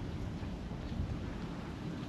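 Wind buffeting the microphone: a steady low rumble with a hiss over it.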